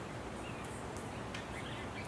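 Steady outdoor background noise with a few faint, short bird chirps and light ticks.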